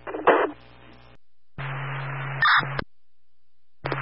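Scanner audio of fire-department two-way radio. A short burst at the start, then about a second of an open, keyed-up channel: hiss over a steady low hum, with a brief high beep near its end before it cuts off abruptly. Another transmission keys up with the same hum just before the end.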